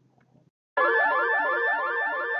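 A moment of silence, then a synthesized intro effect starts abruptly under a second in: a held high whistle over a warbling electronic tone that wobbles about five times a second.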